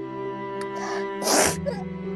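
Slow, sad background music of long held bowed-string notes. About a second in, two short breathy bursts, the second one loud and sharp like a sniff or sneeze.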